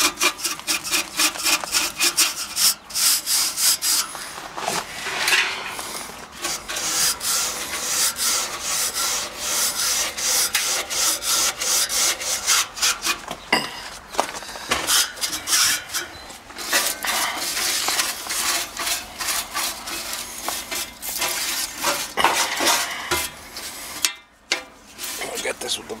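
Stiff-bristle hand brush scrubbing dry dirt off the fins of an air-conditioner condenser coil in fast, repeated scraping strokes, with a brief pause near the end.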